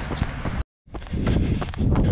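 A runner's footfalls with a steady rushing noise over the camera microphone, broken by a moment of complete silence about two-thirds of a second in.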